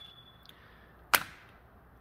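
A metal brake-line retaining clip being pulled free: a brief thin high squeak at the start, then one sharp snap a little over a second in.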